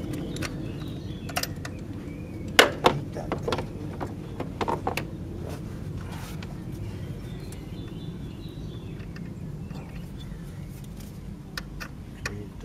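Metal hand tools clinking and knocking as they are handled and set down on the plastic cowl panel of a car engine bay: a few scattered sharp knocks, the loudest about two and a half seconds in, over a steady low background hum.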